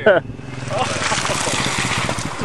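A small off-road vehicle's engine runs through water and mud, with a rushing splash of spray that builds from about half a second in.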